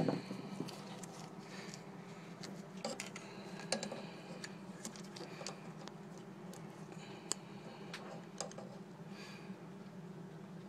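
Scattered light metallic clicks and taps of a valve spring compressor and valve parts being handled in an Atomic 4 engine's valve chamber, over a steady low hum.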